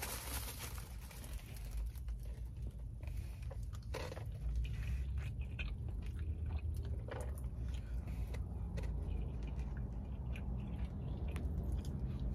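A person chewing and eating takeout fried rice with a plastic fork from a foam container: scattered small clicks, scrapes and chewing noises over a low steady hum.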